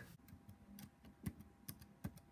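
Faint typing on a laptop keyboard: a handful of irregular key clicks over a faint steady hum.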